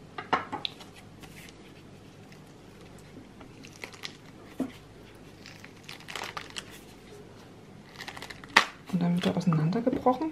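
Pomegranate rind cracking and tearing in scattered short crackles as a pomegranate, scored around its middle, is pried apart into two halves by hand.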